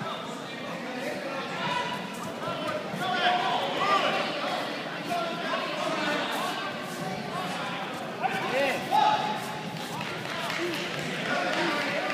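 Overlapping voices of spectators and coaches calling out and talking in a large, echoing sports hall, with a couple of louder shouts about eight and nine seconds in.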